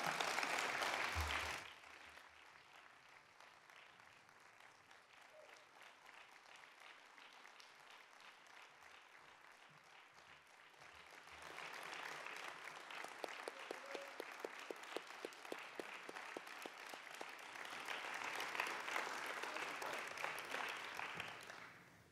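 Audience applause that cuts off abruptly about a second and a half in. After several seconds of faint room noise, applause with plainly separate claps swells again around the middle and dies away near the end.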